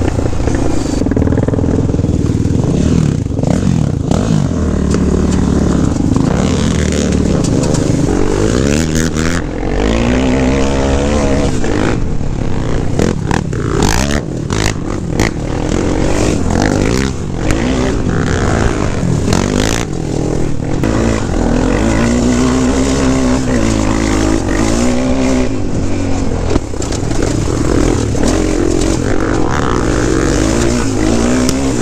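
Honda 400EX sport quad's single-cylinder four-stroke engine under way, its pitch climbing and dropping over and over as the rider works the throttle and shifts. There is a heavy low rumble of wind on the helmet-camera microphone.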